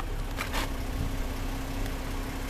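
2006 Jeep Wrangler Rubicon's 4.0-litre straight-six idling steadily, heard from inside the cab, with a couple of faint clicks about half a second in.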